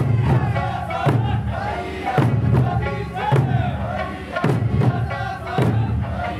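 Okinawan Eisa folk song with sanshin accompaniment, a group of voices shouting and chanting the calls together, over a strong beat that comes about once a second.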